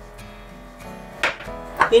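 Faint grinding of a hand pepper mill over quiet acoustic-guitar background music, then one sharp knock a little past a second in as the mill is set down on a wooden cutting board.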